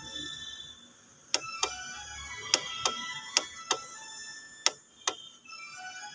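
Push buttons on the control panel of an ultrasound physiotherapy unit being pressed, making about eight sharp clicks, mostly in close pairs. The presses step the unit through its preset programs.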